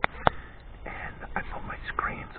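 Two sharp clicks about a quarter second apart, the second the louder, followed by low, soft speech.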